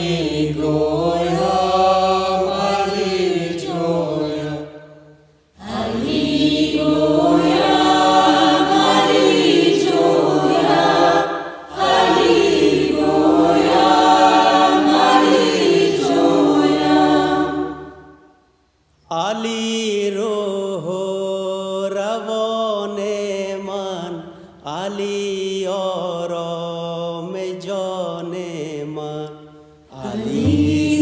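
A choir chanting a song in long sung phrases, each broken off by a brief pause.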